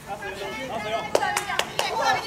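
Women's voices calling out across a soccer pitch, with four sharp hand claps in quick succession between about one and two seconds in.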